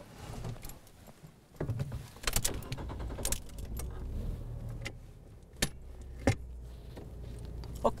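Car keys jangling at the ignition and a small car's engine starting about a second and a half in, then running steadily at idle, with a few sharp clicks and rattles from the keys and controls.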